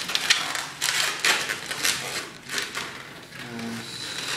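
Latex modelling balloon squeaking and rubbing in short, irregular bursts as it is twisted into bubbles by hand.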